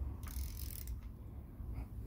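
Ratchet spanner on the crankshaft nut of a Suzuki GT750 two-stroke triple, working faintly as the engine is turned over by hand.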